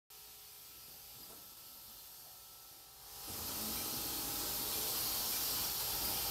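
Steady hiss of laboratory room ambience fading up about three seconds in, after a faint steady hum.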